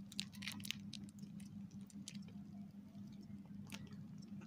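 Faint crinkling and clicking of small plastic sauce packets being handled and opened by hand, thickest in the first second and again near the end, over a low steady hum.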